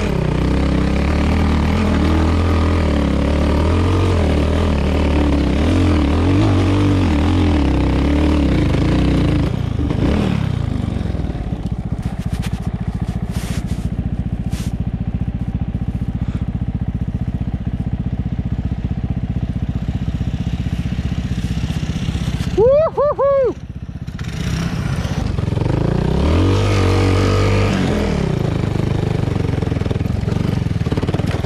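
Single-cylinder engine of a 2017 Honda Grom with an Arrow X-Kone exhaust, pulling along a dirt trail with the throttle rising and falling, then dropping to a steady idle for about ten seconds. A short pitched sound rising and falling comes about two-thirds of the way in, then the engine revs up and pulls away again.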